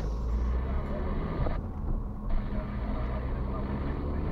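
Car driving along a paved road, heard from inside the cabin: steady low rumble of engine and tyre noise.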